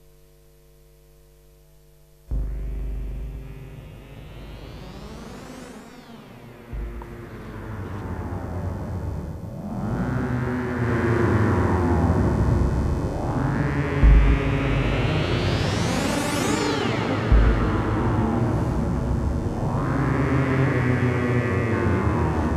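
Generative electronic music played on analogue synthesizers, an Arturia MicroBrute and a Korg Volca Keys, with gliding notes and repeated sweeps that rise to a bright peak and fall back. Occasional kick-drum thumps come from a Volca Beats. The music starts suddenly about two seconds in, after a low hum.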